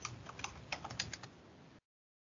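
Computer keyboard keys clicking faintly in a quick irregular run as code is typed, thinning out after about a second.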